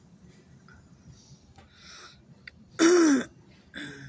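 A person clearing their throat once, loudly and close to the microphone, about three seconds in, with a softer breathy sound just after.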